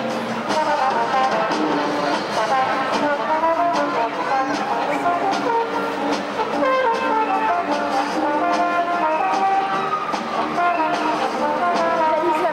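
Circus band music led by brass, trombones and trumpets, playing a continuous melody over repeated drum or cymbal strokes, heard through a camcorder microphone in the arena.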